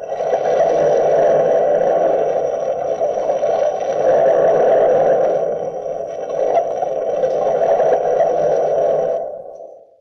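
Scene-change bridge of a 1944 radio drama: a loud, sustained drone that swells slightly and fades out in the last second.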